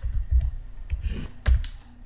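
Typing on a computer keyboard: a handful of separate, unevenly spaced keystrokes.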